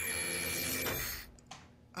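A steady hum with a faint high, even tone, dying away after about a second to near silence, with one faint click near the end.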